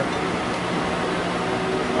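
Steady fan hum with hiss and a low steady tone.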